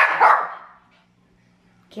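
Pomeranian barking: one sharp bark at the start that fades over about half a second, then another bark just at the end.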